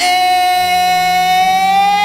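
A singer holds one long note in a pop ballad, its pitch rising slightly partway through, over a soft low accompaniment that comes in about half a second in.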